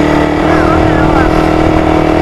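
Suzuki Raider 150 single-cylinder motorcycle engine running steadily at cruising speed, heard from the moving bike with wind noise on the microphone.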